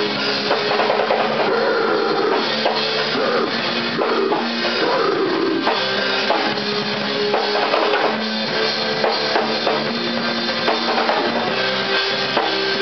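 Rock band playing live in a small room: a drum kit, electric guitars and an electric bass playing together at a steady, loud level.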